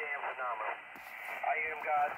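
A man's voice coming over a ham radio transceiver's speaker, thin and narrow-sounding, with short gaps between phrases.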